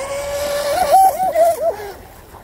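High-pitched whine of an electric RC speed boat's 4000 kV brushless motor at speed. It holds steady, then about two-thirds of a second in jumps up and down in pitch several times as the hull hits small wakes, and falls away near the end.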